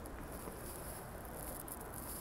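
Faint, steady background noise of a large empty hall, with a thin high-pitched fluttering chirp over it.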